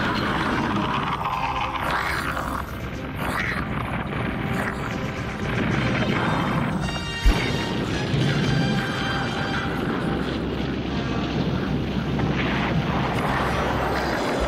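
Dramatic action-cartoon score mixed with crashing and rumbling battle sound effects, with one sharp impact about seven seconds in.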